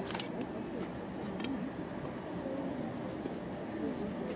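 Indistinct background voices of people talking over a steady low background noise, with a couple of brief clicks.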